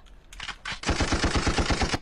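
Recorded machine-gun sound effect in a music track: a rapid burst of about ten shots a second starting about a second in, after a few short clicks.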